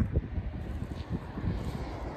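Wind buffeting the microphone, an uneven low rumble with gusty pulses.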